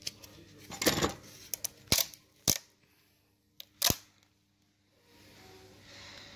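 A few sharp clicks and knocks, about five in under four seconds, irregularly spaced; the first is longer and rattling.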